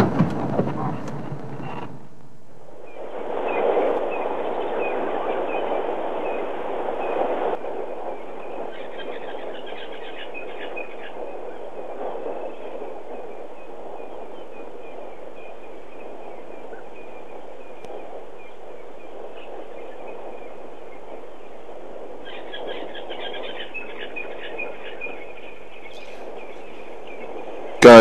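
Vehicle noise that cuts off about two seconds in. It gives way to a steady outdoor background hiss with faint high chirping in short runs, about nine seconds in and again past twenty seconds.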